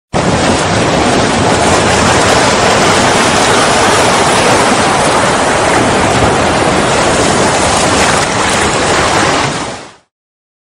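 A loud, steady rushing noise, with no tune or beat, under an animated intro. It starts abruptly and fades out in the last half second.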